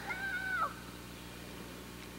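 A short, high-pitched vocal call, held for about half a second and then falling away, followed by steady camcorder hiss.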